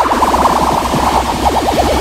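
Loud electronic dance music from a UK bounce / hard dance DJ mix: warbling synth lines over fast repeated notes and a steady pulsing bass.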